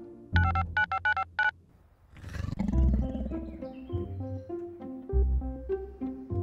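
A quick series of about five short electronic keypad beeps as a smartphone is dialled. About two seconds in comes a loud, noisy swell, then background music with a steady low bass line.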